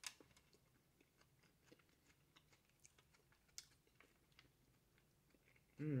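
Faint close-up chewing of a soft chicken taco: a sharp click as the bite is taken at the start, then irregular small wet mouth clicks and smacks. A hummed 'mm-hmm' comes near the end.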